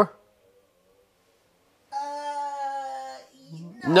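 A pause of near silence, then a woman's drawn-out "uhhh" of hesitation, held at one steady pitch for about a second and a half.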